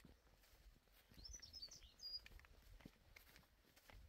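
Near silence outdoors, with a small bird giving a quick run of high chirps from about one to two seconds in.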